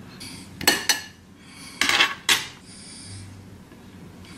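Metal fork clinking and scraping against a ceramic bowl while scooping tuna salad: two pairs of sharp clinks, the first just under a second in and the second around two seconds in.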